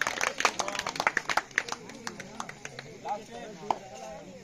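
Rapid, irregular hand claps at a kabaddi court, dense in the first two seconds and thinning out, with short shouts from men's voices near the end.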